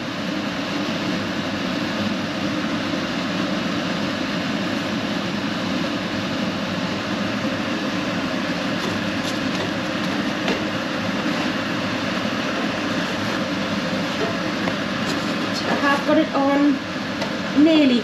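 Kitchen extractor fan running, a steady, even rush of air that is a bit noisy.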